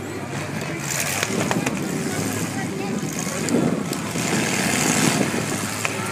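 Demolition derby cars' engines running in the arena, mixed with the chatter of the crowd in the stands.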